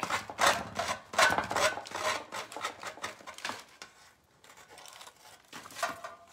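Sanding block rubbed in quick strokes, about three a second, along the paper-covered edge of a metal flower, sanding away the excess decoupage paper. The strokes fade to faint scuffing after about three and a half seconds.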